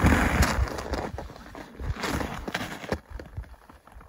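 Irregular soft scuffs, crunches and rustles of a person moving about in snow in winter clothing, beginning with a short noisy burst and fading out near the end.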